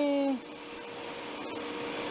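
A man's drawn-out hesitation sound ends about half a second in. It leaves a steady factory-floor machinery hum with one constant tone.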